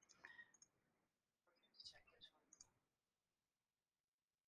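Near silence with a few faint clicks from computer input, in two small clusters: a few just after the start and a few more around two seconds in.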